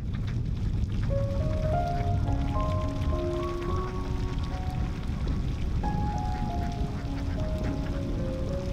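A large flock of domestic ducks quacking in a field, under background music with a slow melody of held notes that starts about a second in.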